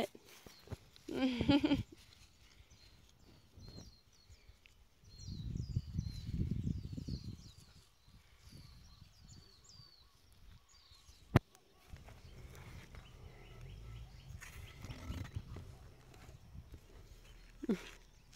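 Outdoor ambience with wind buffeting the microphone and faint, repeated bird chirps in the background. A toddler makes a short vocal sound about a second in, and there is a single sharp click a little past the middle.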